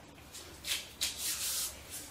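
A hand rubbing and pressing a cardboard word card flat against a wall: a short scratchy rub, then a longer one about a second in.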